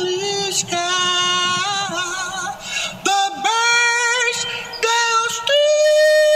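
Gospel song: one voice singing long held notes with vibrato, moving from note to note about once a second and rising to a long high note near the end.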